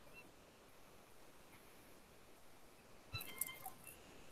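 Near silence with faint room tone. A little past three seconds in there is a brief faint click, followed by a few short high chirp-like tones.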